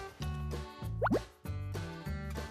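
Upbeat background music with a bouncing bass beat, and a quick rising 'boop' sound effect about a second in.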